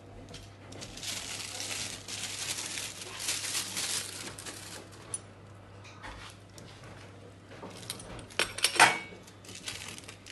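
Plastic wrap crinkling and rustling as pasta-dough sheets are handled on a kitchen counter. Near the end comes a brief sharp clatter, the loudest sound, like a utensil knocking on the worktop.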